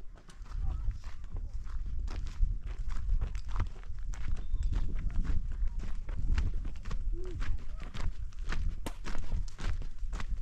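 Footsteps on a stony dirt path, a steady walking rhythm of about two to three steps a second, over a low rumble.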